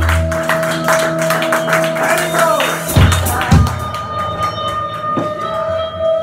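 Live band playing: busy strummed guitar with drums and a steady held note underneath, two heavy low thumps a little after halfway, then the playing thins out near the end.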